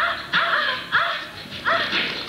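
A dog barking in a quick run of about five short barks, over quieter music.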